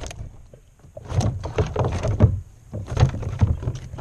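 Irregular thumps and knocks against a plastic kayak hull, in clusters about a second apart, as a bowfin flops on the deck while it is landed and handled.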